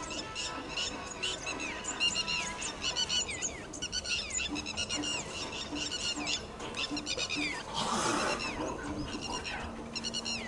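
A chorus of birds calling from the trees: rapid, repeated high chirps with downward-sliding notes, many overlapping. In the second half a low note repeats about twice a second, and about eight seconds in a brief rush of noise passes.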